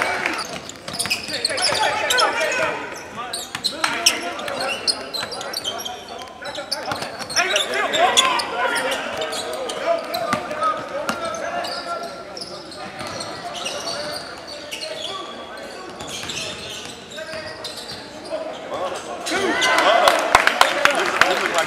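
Basketball game sound in a gym: a ball bouncing on the hardwood court, with players' and spectators' voices in the background.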